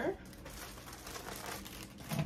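Rummaging through a vanity drawer full of hair products: a quiet, irregular run of light clicks and crinkling rustles.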